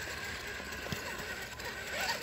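Traxxas TRX-4 RC crawler's electric motor and geartrain whining steadily as it crawls over rocks, with a faint click about a second in.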